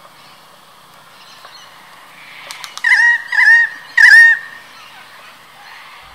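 Channel-billed cuckoo calling: a quick run of four or five loud, piercing, wavering notes about three seconds in, lasting about two seconds, after a few quiet seconds.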